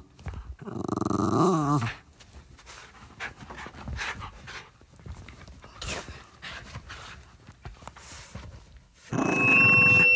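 A dog vocalising, with a drawn-out sound that rises and falls in pitch for about two seconds, then quieter scattered sounds. About a second before the end, a loud steady hum with a thin high ringing tone comes in.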